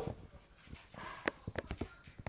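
Light, irregular clicks and knocks, about a dozen in quick succession: handling noise from a bicycle's rear V-brake and frame being touched.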